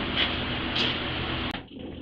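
Steady background hiss with a faint low hum, with no welding arc running. About one and a half seconds in, a click and an abrupt drop to a quieter, duller background mark a cut in the recording.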